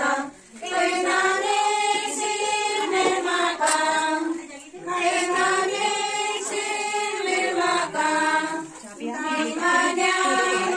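A group of women's voices singing a song together in long held lines, with a short break between lines about every four seconds.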